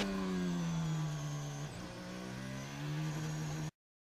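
Onboard engine sound of a Red Bull Formula 1 car, a 1.6-litre turbocharged V6 hybrid, running at speed on track with a steady note. It dips briefly a little under two seconds in, then picks up again, and cuts off abruptly near the end.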